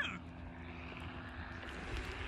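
Paramotor engine running steadily at low revs: a steady low hum with a hiss over it.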